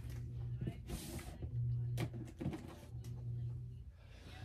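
Small clicks and knocks of supplies being handled and set down while nail foils are fetched, with a brief rustle about a second in. A low hum comes and goes underneath.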